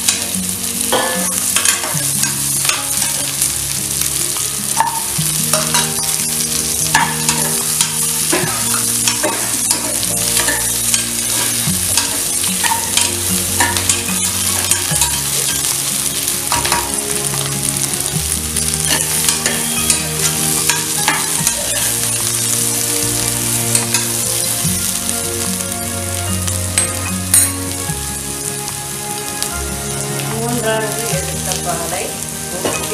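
Chopped vegetables frying and sizzling in an aluminium pressure cooker while a steel ladle stirs them, with frequent sharp scrapes and knocks of the ladle against the pot.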